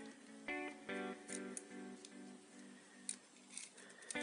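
Quiet background music of plucked notes, one after another.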